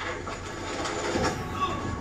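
Soundtrack of a TV drama's action scene: a dense, rumbling noise with scattered knocks and a low falling sweep just after a second in.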